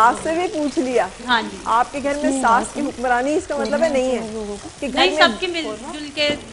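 A woman speaking into a microphone, with a steady sizzle of food frying in a pan underneath.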